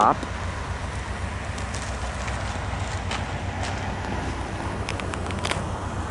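VIA Rail P42DC diesel locomotive idling at a standstill: a steady low rumble with a faint even pulse. A few faint clicks sound near the middle and toward the end.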